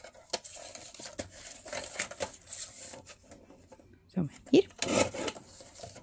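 Paper being handled and slid on a sliding-blade paper trimmer, with soft rustles, small taps and the blade carriage rasping along its rail as it cuts a strip of paper. A louder scrape comes about five seconds in.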